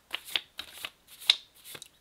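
A thick deck of index cards being shuffled by hand: a run of quick, irregular snaps, the sharpest a little over a second in.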